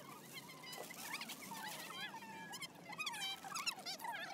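Small birds chirping and trilling, many short quick calls overlapping, busiest near the end.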